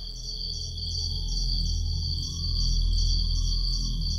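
Night-phase background music cue: a deep low drone under steady high tones, with a faint high pulse repeating about three times a second.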